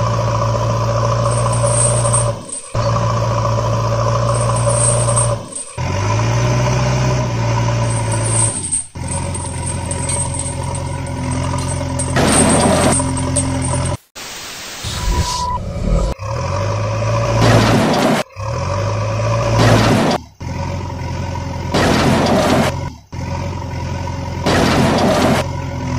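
Truck engine sound effects: a steady engine drone in a series of short segments that cut off abruptly every few seconds, with several brief bursts of hiss in the second half.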